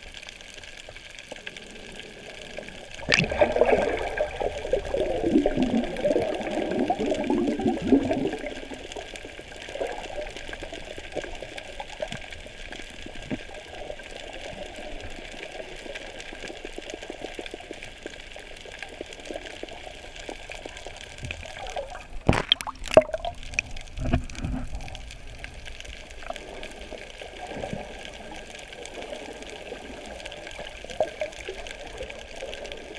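Underwater sound on a submerged camera: a steady watery hiss, with a louder rush of moving water from about three to eight seconds in. A few sharp knocks come about two-thirds of the way through.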